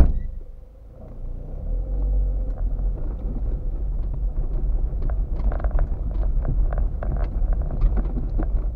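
A loud thump, then a car pulling away and driving slowly along a rough gravel road: a low rumble from the tyres with scattered crackles of stones.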